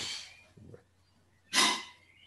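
A person's short, breathy puff of breath, once, about one and a half seconds in, after the fading end of a spoken word.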